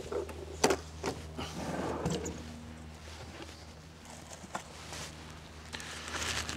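Handling noise as a teardrop trailer's aluminium galley hatch is lifted open and gear is moved inside: a sharp knock about half a second in, a few lighter clicks and some soft rustling, then another click near the end.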